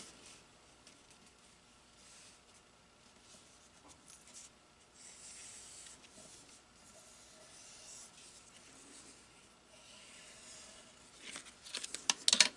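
Faint scratching of a pencil on paper as it traces an outline, in several short strokes.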